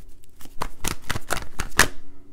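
A deck of tarot cards shuffled by hand: a quick run of about six sharp card strokes starting about half a second in, the last one the loudest.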